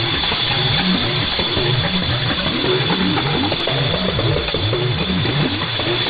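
Voice of Nigeria's shortwave AM signal on 7254.9 kHz, received through a software-defined radio. It carries a short low-pitched tune repeating about once a second, typical of a station's interval signal before the hour, under heavy static hiss and a steady high whistle.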